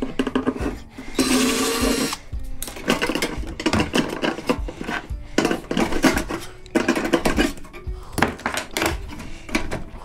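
Cordless drill running for about a second, backing a screw out of a microwave oven's sheet-metal housing, then metal clattering and knocking as the casing is handled and turned over. Background music plays throughout.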